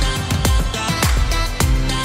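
Background music with a steady beat, a little under two beats a second, over sustained chords.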